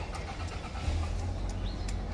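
Street background: a low, steady rumble of car traffic, with a few faint light ticks.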